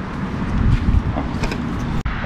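Wind buffeting the microphone, a steady low rumble, with a few faint clicks about one and a half seconds in.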